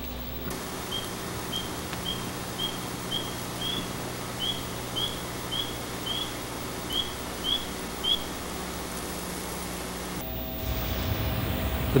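Spring peepers (Hyla tree frogs) peeping: about a dozen short, high, rising peeps, roughly two a second, stopping about eight seconds in, over a steady hum and hiss.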